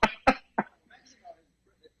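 A man laughing briefly into a microphone: three short breathy bursts in the first second, then faint scattered sound.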